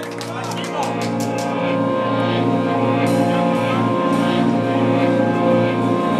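Electric guitar holding a sustained, droning chord through the amp, swelling slowly in loudness as the next song starts to build.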